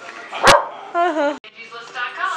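A sharp knock about half a second in, then a short, high, wavering vocal sound that cuts off suddenly.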